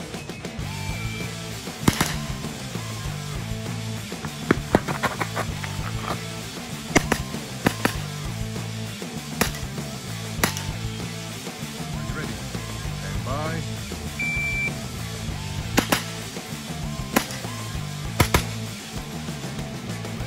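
Background music with a steady beat runs throughout, with about a dozen sharp 9mm shots from a JP GMR-15 pistol-caliber carbine, fired singly and in quick pairs. The shots are the loudest sounds.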